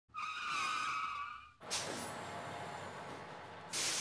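Cartoon-style vehicle sound effects: a wavering tyre screech for about a second and a half, then a sudden burst with a falling whoosh as the vehicle drives off. A short burst of hiss comes near the end.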